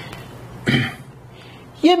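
A person coughs once, briefly, about two-thirds of a second in.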